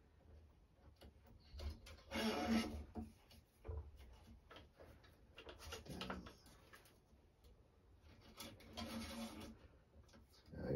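Squash racket string rubbing as it is drawn by hand through the frame and across the strings, in three pulls about two, six and nine seconds in, the first the loudest.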